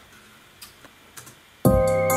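A few faint clicks of laptop keys. About a second and a half in, a hip-hop beat starts playing loudly: synth key chords over a deep 808 bass.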